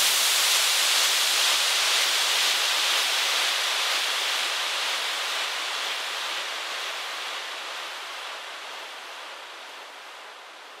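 A synthesized white-noise wash from an electronic dance track: an even hiss, strongest in the treble, fading out slowly and steadily with no beat under it.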